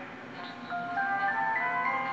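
Music from an FM radio broadcast: an instrumental passage of held notes climbing step by step between sung phrases of a Christmas song.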